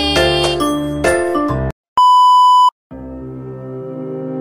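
A bright intro jingle that stops abruptly, then one loud electronic beep at a single steady high pitch lasting under a second, followed by soft, sustained background music.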